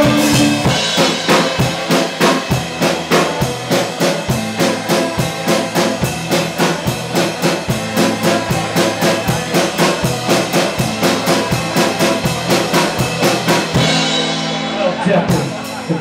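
Live folk-rock band playing an instrumental break: a drum kit keeps a fast, even beat under strummed acoustic guitar and accordion. The beat breaks off briefly into held chords near the end, then comes back in.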